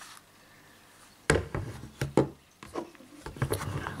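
Handling noise from an Umarex P08 Luger CO2 BB pistol: after a quiet start, a run of sharp clicks and knocks from about a second in as the pistol's parts are worked, with a few more near the end.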